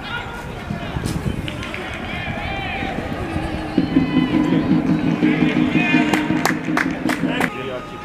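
Players shouting on a football pitch, with a steady low droning tone held for nearly four seconds from midway and several sharp knocks near the end.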